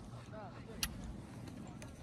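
Faint voices in the background over a low steady rumble, with one sharp click just under a second in.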